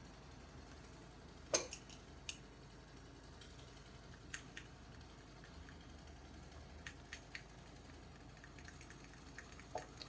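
A few sparse light clicks and taps of a plastic strainer knocking against a glass bowl as fingers press mashed banana paste through the mesh. The loudest click comes about one and a half seconds in, and softer ones are scattered over a quiet background.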